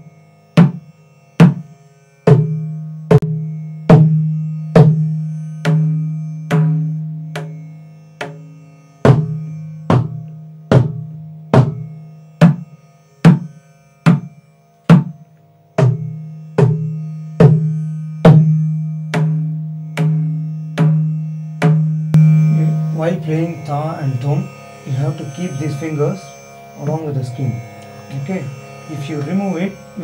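Mridangam played in slow, even single strokes, about one every 0.8 s, each ringing on with a steady low tone: beginner practice of the basic strokes (ta, di, tum, nam). From about 22 s the playing turns denser, with the strokes coming closer together and overlapping.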